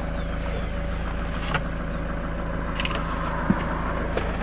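Toyota Land Cruiser's 3.0-litre D-4D diesel engine idling, heard from inside the cabin as a steady hum, with a couple of faint light clicks.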